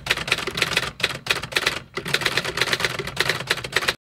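Typewriter sound effect: a rapid run of key strikes clacking in time with text being typed onto the screen, stopping abruptly near the end.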